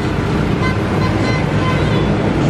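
Loud, steady city street noise: traffic and a crowd's din on a wet downtown street at night, with no single sound standing out.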